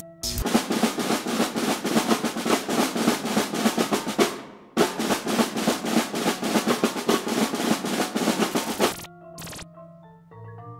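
Four snare drums played together in fast, dense strokes and rolls, in two passages broken by a short gap near the middle. They stop about a second before the end, leaving a few faint held notes.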